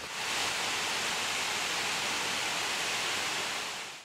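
A 73-foot waterfall running at full volume after heavy rain, a steady rushing of falling water that fades out near the end.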